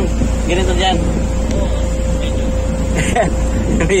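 A boat's engine running steadily under way: a constant low drone with a steady hum above it. A few short bits of voice come through over it.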